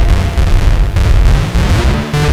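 Electronic music passage: a loud, noisy, distorted low-end rumble from an analog synthesizer, with no clear melody or voice.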